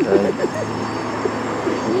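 Steady engine drone of a motor vehicle passing on the street, with a man's laughing "ay" at the start and brief voice sounds near the end.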